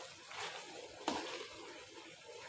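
Metal spatula stirring thick dal and potato curry in a steel pan, with one sharp tap of metal on the pan about a second in.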